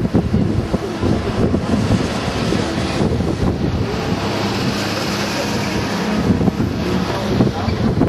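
Wind buffeting the microphone: a loud, uneven low rumble with a rushing hiss that grows louder in the middle.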